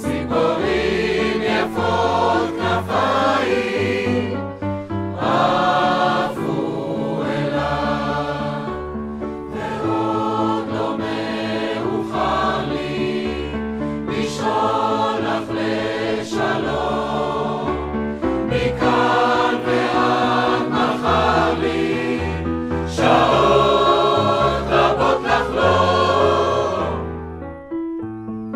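Mixed choir of men and women singing in phrases a couple of seconds long over piano accompaniment. Near the end the voices fade out and the piano carries on.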